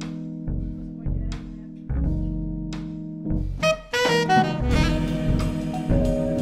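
Small jazz band playing a slow tune: plucked double bass notes under held keyboard chords. An alto saxophone comes in just past halfway, with cymbals from the drum kit.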